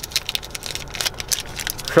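A foil snack wrapper crinkling in the hand, a dense run of irregular small crackles, as the treat inside is bitten out of it.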